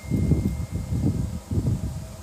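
Low, irregular rumbling on the microphone in uneven surges, like air buffeting the mic.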